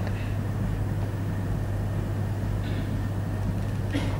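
Steady low hum with an even hiss: the background noise of the recording, with no speech.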